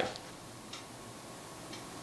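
Quiet room tone during a pause in speech, with a faint tick about once a second.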